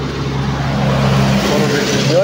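A truck engine running steadily close by, growing a little louder about a third of the way in.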